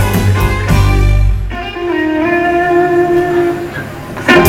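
Live blues-rock band playing. About a second and a half in, the drums and bass drop out and a single held note rings on alone, bending upward in pitch and fading toward the end.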